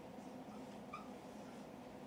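Dry-erase marker writing on a whiteboard, quiet, with a faint short squeak of the tip about a second in, over a low steady room hum.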